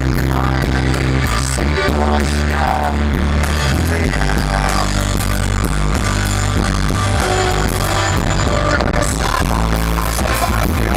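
A rock band playing live, with electric guitar and drums, loud and steady, heard from within the audience.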